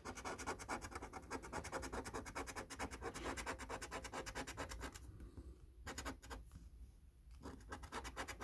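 A coin scraping the scratch-off coating from a paper scratch card in rapid back-and-forth strokes. About five seconds in, the scraping thins to a few slower, quieter strokes.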